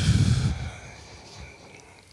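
A man's short exhale into a close desk microphone in the first half second, fading into quiet room tone.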